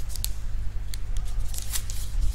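Sheets of paper being handled, rustling and crackling in a quick series of short sounds, over a steady low hum.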